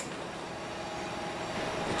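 Docklands Light Railway train at a station platform: a steady electric hum over general running noise, growing slowly louder.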